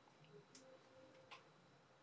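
Near silence: room tone with two faint clicks from a marking pen being picked up and handled, about half a second in and again just after a second in.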